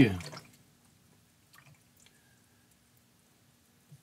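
The tail of a spoken word at the start, then near silence: faint steady room hum with two faint small taps about a second and a half and two seconds in.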